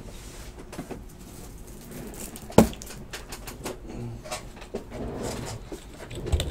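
Quiet handling noise at a table: faint scattered clicks and rustles, with one sharp click about two and a half seconds in.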